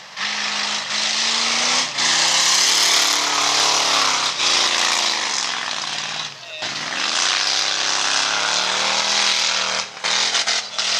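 Race car engines on a dirt oval, revving up and down as the cars circle the track; about six and a half seconds in the pitch drops and then climbs again as they lift off and accelerate.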